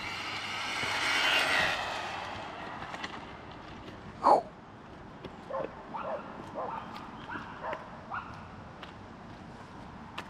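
The brushless motor of an MJX Hyper Go H14MK 1/14 RC car, run on a 3S LiPo, whines at full throttle with its tyres on asphalt. The whine swells to a peak about a second in and fades as the car speeds away. A single sharp short sound comes about four seconds in, followed by a few faint short calls.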